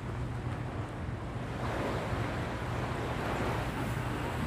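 Sea water lapping around a person standing chest-deep, with wind buffeting the phone's microphone: a steady noisy rush with a low rumble underneath.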